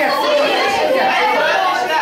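Overlapping chatter of several voices in a large room, with no single voice clear.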